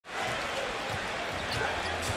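Steady arena crowd noise fading in at the start, with a few faint low thuds of a basketball being dribbled on a hardwood court.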